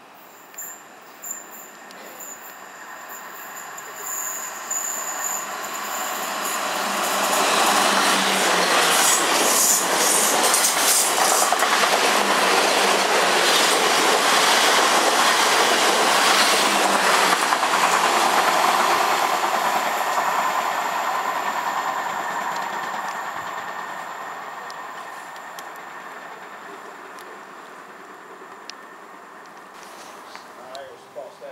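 Electric multiple-unit passenger train running through the station without stopping. A high ringing from the rails comes first as the train approaches, then the noise rises to a loud rush with wheels clicking over rail joints as it passes, and it fades away over the last several seconds.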